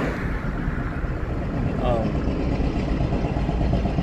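A vehicle driving along: a steady low engine and road rumble with wind noise.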